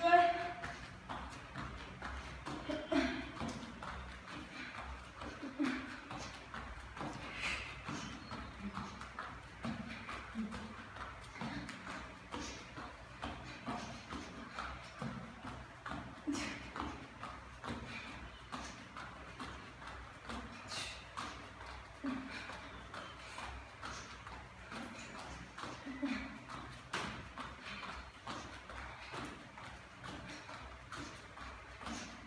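Bare feet landing on a gym floor in a steady rhythm during jumping jacks, with short voiced sounds from the exerciser between the landings.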